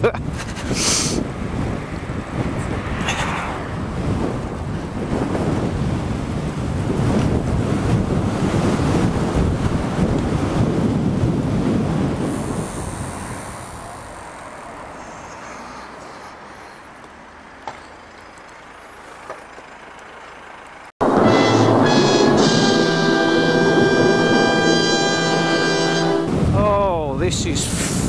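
Wind rush and road noise while riding a fast electric bike, loud at first and easing off about halfway. About 21 s in there is a sudden cut to roughly five seconds of a steady held chord of several tones, like dropped-in music, before the wind noise returns near the end.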